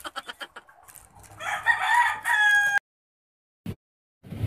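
A rooster crowing once: a call of about a second and a half that ends on a held, steady note and cuts off suddenly.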